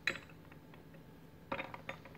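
Small porcelain tea cups clinking as they are handled and set down on a tea tray: a few light clinks, most of them bunched together about a second and a half in.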